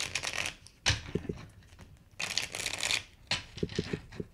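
A deck of tarot cards being riffle-shuffled and bridged by hand: two bursts of rapid fluttering card noise, one at the start and one about two seconds in, with a few soft knocks between them.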